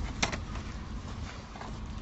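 Low, steady street background noise, with a short click about a quarter second in.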